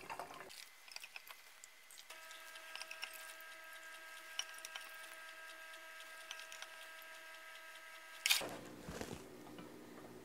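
Sugar syrup dripping and trickling from a ladle through a plastic canning funnel into a glass mason jar, faint, with a steady tone underneath for several seconds. A single sharp knock comes about eight seconds in.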